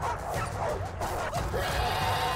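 A pack of hyena-like beasts yelping and snarling in a run of short, rising-and-falling yelps, over music.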